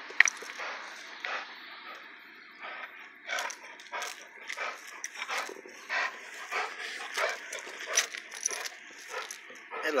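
Cane Corso–Pitbull mix dog making short, irregular growling noises while tugging at a toy, with a sharp knock just after the start.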